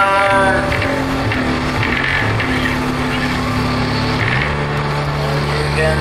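Instrumental passage of a hard rock song: full band with a low bass line moving between held notes. A long low note is held from about four and a half seconds in. The tail of a sung line fades out in the first half second.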